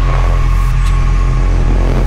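Bass-heavy electronic dance music: a sustained, heavy distorted bass with a thin steady high tone held above it.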